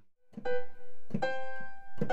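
Piano notes played on a digital keyboard: a note struck about half a second in and another added about a second in, both ringing on, after a brief silence at the start.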